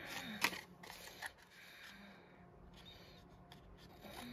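Scissors snipping through patterned paper: a few short, sharp clicks, the loudest about half a second in, with faint rustling of the paper between.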